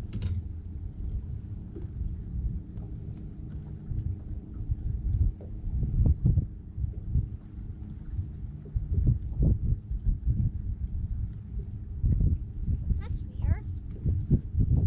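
Irregular low rumbling gusts of wind buffeting the camera microphone, over a steady low hum.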